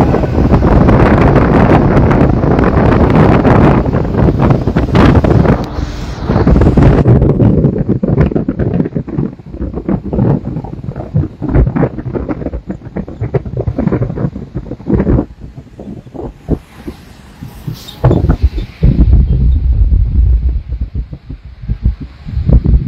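Wind buffeting the microphone of a phone filming from a moving vehicle, over road noise: heavy and dense for the first several seconds, then gusty and choppy, with a heavy low rumble again near the end.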